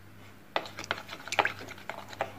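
A wooden craft stick stirring a runny slime mixture in a plastic bowl, with irregular light clicks and scrapes of the stick against the bowl starting about half a second in.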